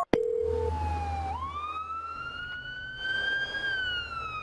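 Ambulance siren sounding a slow wail: the pitch dips about a second in, climbs steadily for a couple of seconds, then slowly falls, over a low steady hum.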